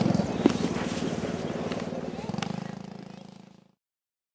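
A four-wheeler's (ATV's) small engine running steadily, with a couple of sharp clicks, fading a little and then cutting off abruptly just before the end.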